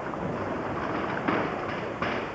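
Steady background noise of a large, busy hall, with faint, indistinct voices in the distance.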